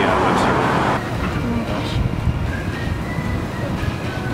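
Road traffic noise on a city street, dropping to a quieter outdoor background about a second in.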